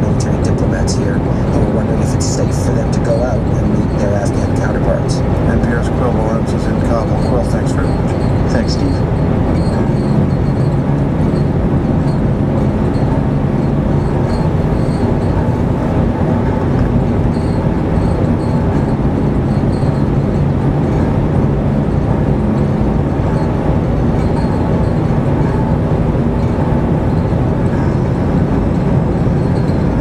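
Car cabin noise while driving: a steady engine drone and tyre rumble from the road. Faint radio talk sits under it in the first several seconds.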